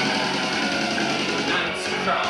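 Live rock band playing, with strummed electric guitar to the fore over a full band sound.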